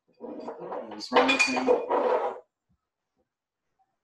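Glass jars and bottles clinking as they are moved about on a cabinet shelf, mixed with a voice. About two and a half seconds in, the sound cuts out completely to dead silence.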